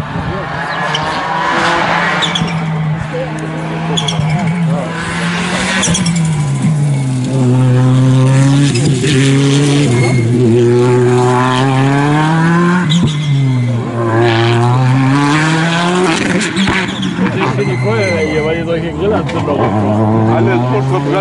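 Rally car engine at high revs, its pitch dipping and climbing again several times as the car slows for the bends and accelerates out of them.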